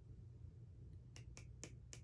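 Near silence with four faint, sharp clicks in the second half, from a small plastic loose-pigment jar with a sifter being handled.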